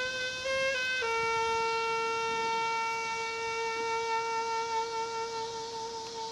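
Solo saxophone playing a slow melody: a couple of short notes, then one long note held for about five seconds.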